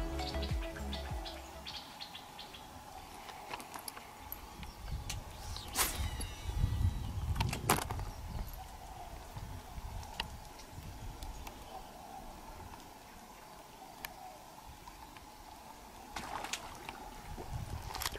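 Background music ends in the first second. After that comes quiet outdoor sound: a low uneven rumble, a faint steady tone, and a few sharp clicks or knocks, the two loudest near the middle.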